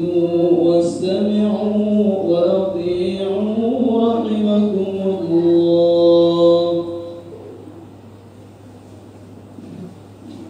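A preacher's voice chanting in long, held notes that glide slowly up and down, stopping about seven seconds in. After that only a low steady hum remains.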